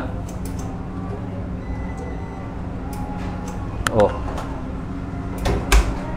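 Door of a stacked front-loading tumble dryer swung shut, latching with a thump near the end, over a steady low machine hum.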